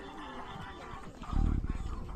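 Music and voices in the background, with a brief loud low rumble lasting about half a second, roughly a second and a half in.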